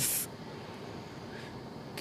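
A pause in the talk: steady, faint background noise with no distinct event, after a short hiss right at the start that ends the previous word.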